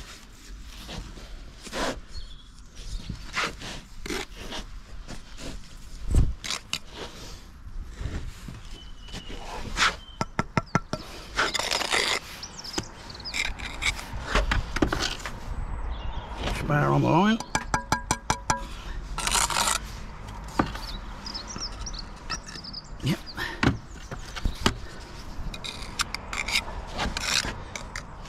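A steel trowel scraping and tapping mortar and brick, with scattered knocks as a brick is set, and a couple of short runs of rapid ticks.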